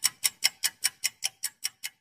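Clock-ticking sound effect: rapid, evenly spaced sharp ticks, about five a second.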